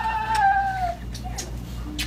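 A woman's high-pitched, wordless wailing cry of joy from someone who cannot speak because of ALS. One long held note slides down in pitch and stops about a second in.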